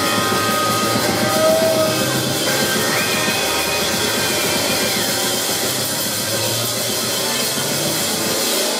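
Three-piece mod/punk rock band playing live: electric guitar and drum kit going loud and steady, with a few long held notes and no singing.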